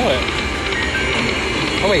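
Walking Dead video slot machine spinning its reels, with the machine's clicking reel sounds over a steady casino din.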